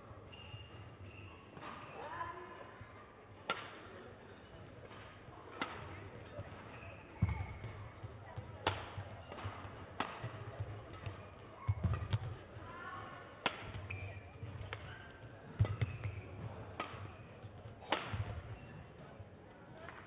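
Badminton rally: a shuttlecock struck hard by rackets in a string of sharp cracks a second or two apart, with footfalls thudding on the court floor and short squeaks from players' shoes.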